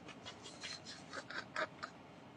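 A man's quiet, breathy laughter in a string of short, squeaky wheezes, coming thickest in the second half.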